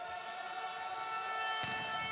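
A steady, sustained chord of several held tones, like a siren, that grows slightly louder, with a faint click about one and a half seconds in.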